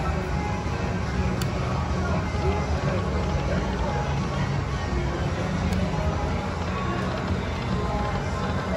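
Tiki Fire video slot machine playing its electronic music and reel-spin sounds over a steady casino-floor din with background voices, while the reels spin. Two short sharp clicks, one about a second and a half in and one near six seconds.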